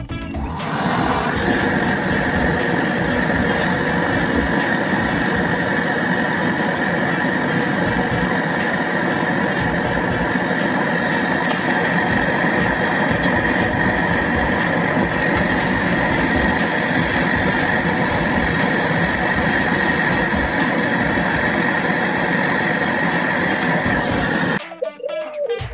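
Portable butane canister gas torch lit about a second in, then burning with a loud, steady hiss as it heats the copper pipe joints at an air conditioner outdoor unit's compressor for brazing.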